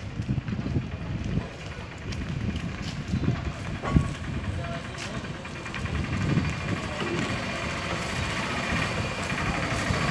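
Street ambience with a rumble on the microphone and indistinct voices. An auto-rickshaw engine grows louder toward the end as it approaches.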